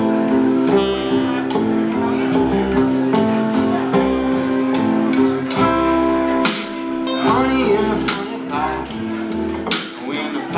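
Live acoustic blues trio playing an instrumental passage: strummed acoustic guitar over an upright bass line, with a lap-played slide guitar adding held notes that slide in pitch about seven seconds in.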